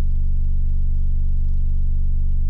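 A steady, very low bass tone near 24 Hz played through a speaker, with a buzz of overtones above it, holding unchanged throughout.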